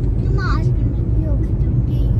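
Steady low rumble of a car on the move, heard from inside the cabin, with a brief voice sound about half a second in.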